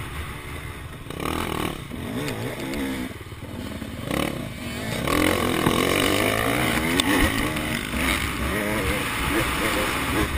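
Motocross dirt bike engine heard from the rider's helmet camera, its pitch rising and falling repeatedly as the throttle is worked through the turns, over a rush of wind noise. It grows louder about halfway through.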